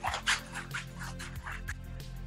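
Scissors cutting a long strip off a sheet of brown paper: a quick run of crisp snips and paper rustle.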